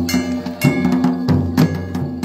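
Traditional Himachali temple band playing for a deity procession: repeated drum strokes and clanging metallic percussion over a steady, sustained low wind-instrument drone.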